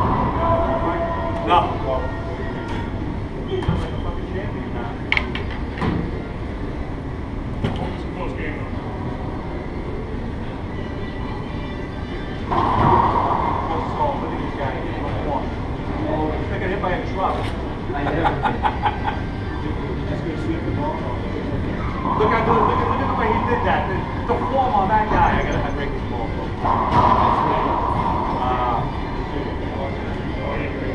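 Racquetball rally in an enclosed court: sharp cracks of racquet strikes and the ball hitting the walls and floor, echoing, several in the first eight seconds, over a steady low hum. Later come the players' voices between points, with a few more ball hits.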